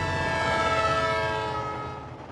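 Diesel locomotive horn sounding as the passenger train passes, a steady chord that drops slightly in pitch, over the low rumble of the train. It is loudest about a second in and fades near the end.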